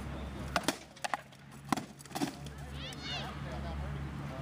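Rattan swords striking shields and armour in a quick series of sharp knocks, about six blows in the first two and a half seconds.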